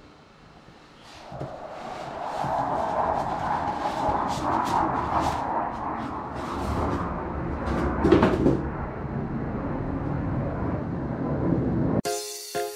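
A polystyrene foam lid being worked out of a cardboard box: steady scraping and rustling of foam against cardboard with scattered clicks, and a louder squeak about eight seconds in.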